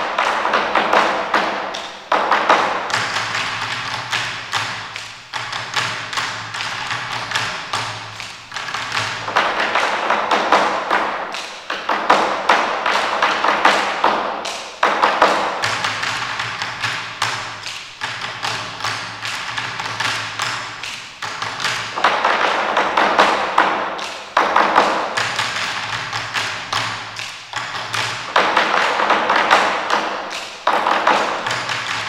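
Chinese drum ensemble playing fast, dense rolls on standing drums, in surging phrases a few seconds long that swell and fall away. A low steady tone sounds under some of the phrases.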